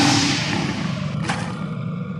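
Intro sound effect: a loud roar-like hit with claw slashes that fades away, with a short sharp swipe about halfway through.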